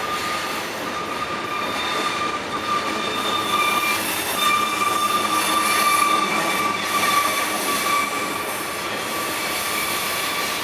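Freight train of covered hopper cars rolling slowly around a tight curve, its wheels giving a steady high-pitched flange squeal over the rolling noise of the cars. The squeal swells slightly in the middle.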